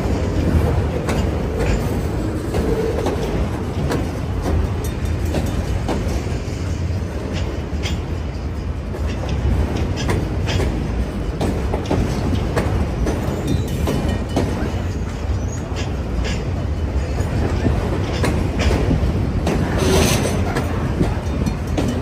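Autorack freight cars rolling past: a steady low rumble of steel wheels on rail, with irregular clicks and clanks from the wheels and couplers.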